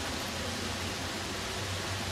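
Steady outdoor background noise: an even hiss with a low hum beneath it and no distinct event.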